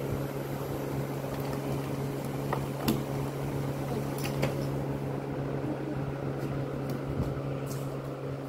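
Plastic toy dollhouse pieces clicking and tapping as they are fitted together by hand, with a few sharp clicks about three and four and a half seconds in. Under them a steady low electric hum runs throughout.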